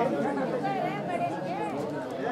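Several men talking at once, their voices overlapping into a jumble of chatter.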